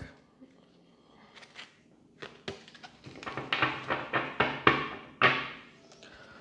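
A tarot deck being handled: a few soft clicks, then a couple of seconds of card rustling and tapping as the deck is picked up and turned over to show its bottom card.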